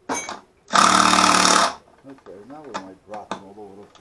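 Cordless drill running under load as it bores a hole through a wooden board, with a short spin right at the start and then a burst of about a second. A quieter voice follows in the second half.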